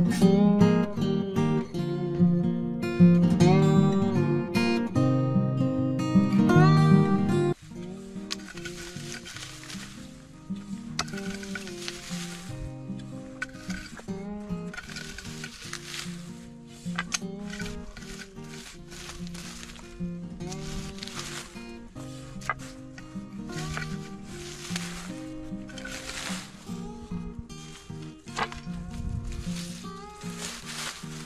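Acoustic guitar music, loud for about the first seven seconds and then much quieter. After the drop, repeated rustling swishes of dry grass and weeds being cut and pulled by hand.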